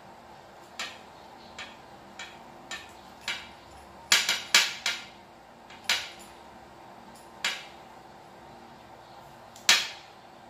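Electrical tape being pulled off the roll and wrapped around a wire splice by hand: about a dozen short, sharp rips, the loudest bunched around the middle and one more near the end.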